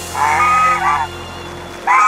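White domestic geese honking: a honk lasting most of a second about a quarter second in, and another starting near the end. Soft background music with held low notes runs underneath and drops out near the end.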